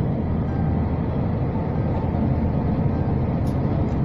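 Steady low rumble of a vehicle, heard from inside its cabin.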